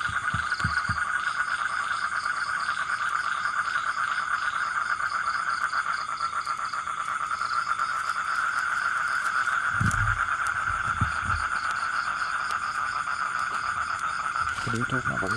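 Night chorus of frogs and crickets: a steady, fast-pulsing trill with fainter chirping higher up. A few low thumps come briefly near the start and about ten seconds in.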